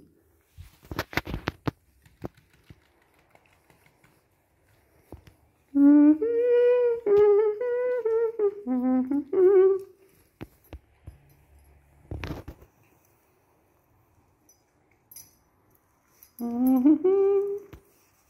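A person humming a short tune of steady, stepping notes for about four seconds, then a few more notes near the end. Scattered sharp clicks early on and a single knock about twelve seconds in.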